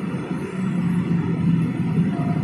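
A steady low engine hum, growing a little stronger about half a second in.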